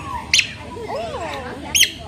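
Two short, high-pitched bird calls, the first about a third of a second in and the second a quick run of notes near the end, over softer voices in the background.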